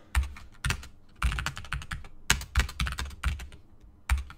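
Typing on a computer keyboard: an irregular clatter of key strokes in short runs with brief pauses between them.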